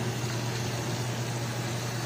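Fish frying in hot oil in a lidded skillet: a steady sizzle, with a steady low hum underneath.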